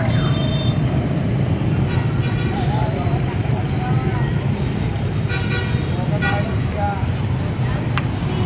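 Street traffic of passing motorbikes: a steady engine rumble with several short horn toots, and faint voices in the background.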